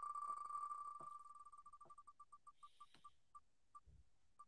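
Faint tick sound of the Wheel of Names spinner wheel as it turns past each name. The pitched clicks come so fast at first that they run together into one tone, then slow and spread out as the wheel coasts to a stop, a few tenths of a second apart near the end.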